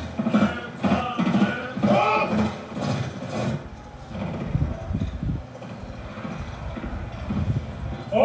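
Film soundtrack playing through a TV: voices for the first few seconds, then a quieter low rumbling.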